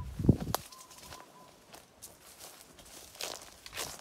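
Footsteps walking over orchard grass and ground litter, a few soft steps and rustles, heaviest in the first half-second. A faint, repeated high pipping note stops after about a second and a half.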